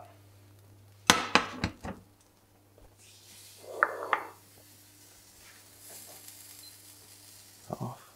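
Kitchen pans and plates clattering as they are handled and set down, with a quick run of knocks about a second in and a couple of lighter knocks near the end.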